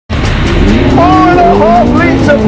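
Ferrari 458 Italia's V8 engine revving hard under acceleration, its pitch climbing steadily, with music mixed over it.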